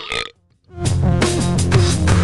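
A cartoon burp sound effect ends about a third of a second in. After a brief silence, loud music with a heavy drum beat and bass line starts.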